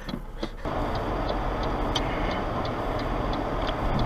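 Steady car-cabin noise from the engine and tyres, with light regular ticks about three times a second. It follows the tail of laughter in the first half-second.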